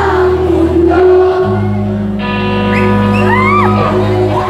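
A funk-soul band playing live: electric bass, electric guitar and drums with singing. The bass moves to a new held note about a second and a half in, and a sustained chord comes in about two seconds in, with sliding notes near the end.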